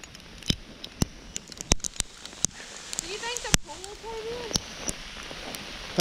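Sleet pellets falling, making sharp, irregular ticks several times a second. About three seconds in, a faint high voice calls briefly.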